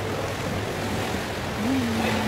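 A small tour boat's engine running with a steady low hum, with water sloshing against the rock of a sea cave.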